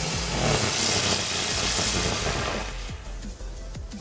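Small category 1 ground firework burning with a loud, steady hiss, which fades out about three seconds in.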